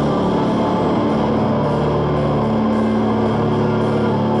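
Live rock band playing loud amplified electric guitars that hold sustained, droning notes, with no clear drum beat.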